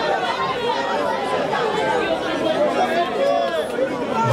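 Crowd of spectators chattering and calling out, many voices overlapping in a steady babble.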